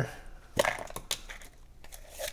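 End cap being worked off a small cardboard dice tube by hand: a run of short scrapes and clicks, the loudest about half a second in.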